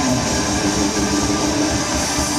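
Rock band playing live, with electric guitars, bass and drum kit in a dense instrumental passage with a steady beat and no vocals, recorded from within the audience.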